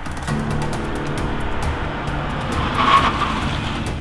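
A car driving up, loudest about three seconds in, with background music underneath.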